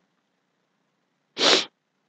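A man sneezing once, a short sharp burst about a second and a half in.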